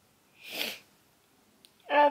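One short, breathy burst of air from a person's nose or mouth, about half a second in, with no voice in it. Her voice starts just before the end.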